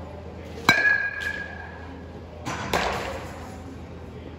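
A baseball bat striking a ball off a batting tee: one sharp hit with a ringing tone that hangs for about a second and a half. About two seconds later comes a second, duller impact.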